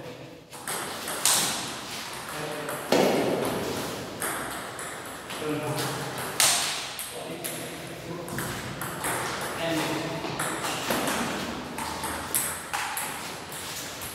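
Table tennis ball being hit back and forth in a rally: sharp clicks off the bats and table at irregular intervals, a few of them much louder.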